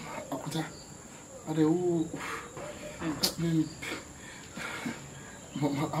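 Short spoken phrases over a steady, high-pitched chirring of crickets.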